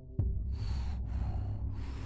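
A deep bass boom with a fast falling pitch sweep, then a steady low bass drone. Over the drone come sharp, breathy exhalations, about three of them, evenly spaced at roughly half-second intervals, as in the sound design of a music-video intro.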